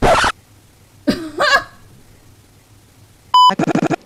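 A short burst of breathy laughter, a brief vocal sound about a second later, then near the end a single short electronic beep, one steady high tone like a censor bleep, the loudest sound here, followed by voice.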